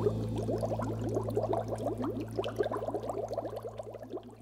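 Bubbling, gurgling water sound effect of a canoe going under, many quick rising bubble blips over a low steady hum, fading out.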